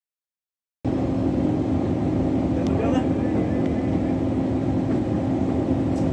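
Steady rumble and low hum of a moving vehicle heard from inside its cabin, cutting in abruptly a little under a second in after total silence.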